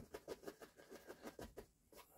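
Faint, quick scratchy strokes of a flat bristle brush dabbing and scrubbing oil paint onto canvas, about eight a second, stopping shortly before the end.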